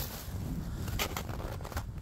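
Footsteps in snow: a few short, soft crunches about a second in and again near the end. Under them runs a low rumble of wind on the microphone.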